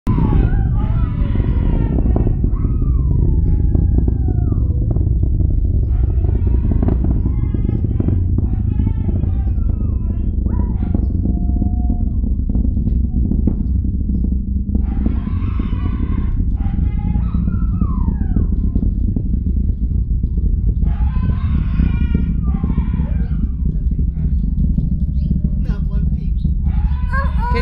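Deep, continuous rumble with crackle from a SpaceX rocket launch. Over it, huskies howl in about six bouts whose pitch slides up and down, upset by the launch noise.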